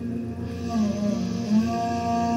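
Experimental live music of long held tones over a steady drone. About half a second in, a new voice enters with a tone that sags and rises in pitch, then settles on a sustained note near the end.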